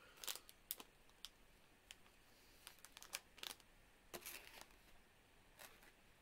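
Faint, scattered crackles of a plastic snack bag being handled, a handful of short crinkles with a small cluster about four seconds in.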